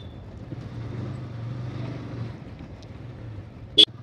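Motorcycle engine running under way at speed, a steady low hum with wind rushing over the microphone. A brief sharp sound comes just before the end.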